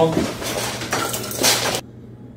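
Clinking and clattering of small hard objects being handled, with a few sharp knocks; it cuts off abruptly just before the end.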